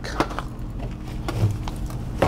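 Wet long-handled brush scrubbing a tire and the wheel-well liner, an irregular run of scratchy strokes loosening baked-on burnt rubber.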